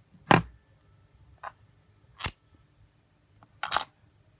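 Sharp clicks of small hard objects knocking on a wooden tabletop while a stone-iron meteorite is tested with a small object: four clicks about a second apart, the first the loudest and the last a quick double knock.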